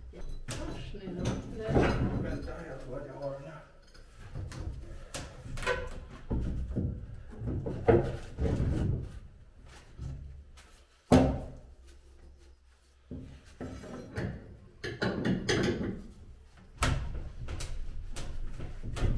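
Repeated knocks and thuds of wood and metal as an unbolted marine diesel engine of about 270 kg is shifted by hand along timber boards. The loudest is a sharp knock about eleven seconds in.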